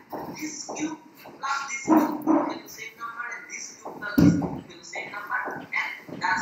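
A person speaking over a video-call connection.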